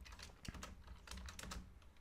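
Computer keyboard being typed on: a quick, irregular run of faint key clicks.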